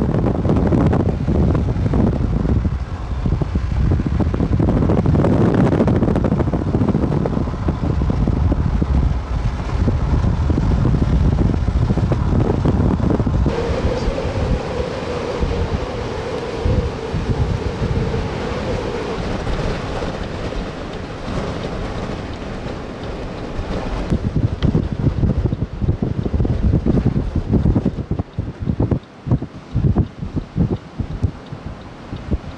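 Gusty wind buffeting the camera microphone, a loud rough rumble that rises and falls with the gusts. A steady hum sits under it for a few seconds midway.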